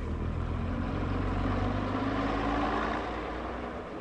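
Pacer diesel railbus running as it comes into the station: a steady engine drone with a low hum that rises a little and then falls away, fading near the end.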